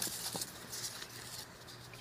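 Crinkly rustling of the foam packing wrap around a guitar as it is handled, busiest in the first second and thinning out after that.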